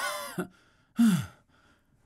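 A man panting loudly, two heavy gasping breaths about a second apart, the second a groaning exhale that falls in pitch. It is staged breathlessness, acted out as a lack-of-oxygen attack.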